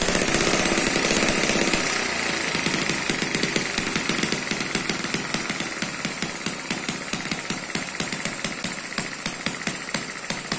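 Eachine ET8 water-cooled four-stroke model engine running just after starting. It goes fast at first, then slows to about four distinct firing beats a second as its carburetor is turned down. It has no governor, so the carburetor alone sets its speed.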